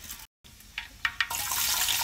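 Hot cooking oil in a pot frying added spices and sliced onions: a few faint crackles, then a loud, steady sizzle that starts suddenly a little past halfway through.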